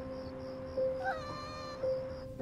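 A hungry cat meows once, a short call that rises and then holds, about a second in. Soft background music with long held notes plays under it.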